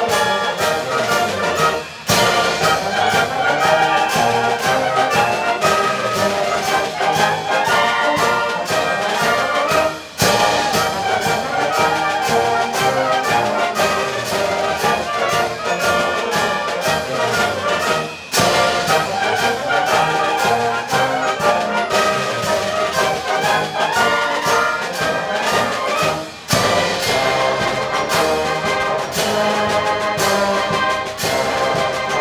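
Concert band playing a march, with brass in front. The sound drops briefly at each phrase end, about every eight seconds.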